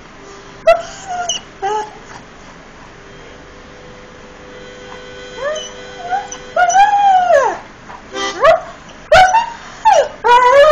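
Irish Setter howling and whining: a few short whimpering cries in the first two seconds, then rising whines building into one long arching howl about seven seconds in, followed by more short cries near the end.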